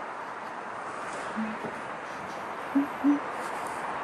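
Three short, low hooting bird notes over a steady murmur of city background noise: a single note, then two close together near the end.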